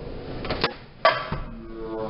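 Two sharp plastic clicks from handling the opened dryer timer, about half a second and a second in, the second louder. A brief musical hum follows near the end.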